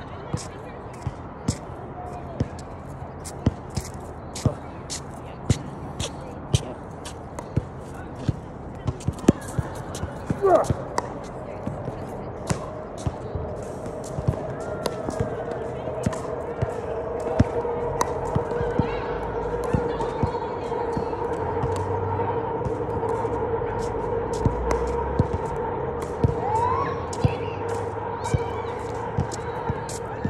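Basketball bouncing on a hard court, a sharp bounce about every half second to a second, with a steady hum coming in about halfway.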